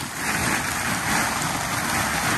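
Wood chips pouring out of a plastic bag onto cardboard: a steady rushing hiss that starts just after the bag is tipped.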